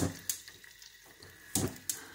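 Raw stuffed chicken thighs being set down into a steel pressure-cooker pot: four short knocks and splats, two at the start and two more about one and a half seconds in, over a faint hiss of oil in the pot.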